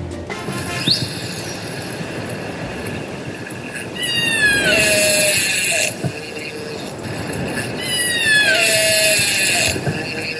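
Killer whale (orca) calls recorded underwater over a steady hiss of water. There is a short rising squeal about a second in, then two long calls, about four and about eight seconds in, each sliding downward in pitch.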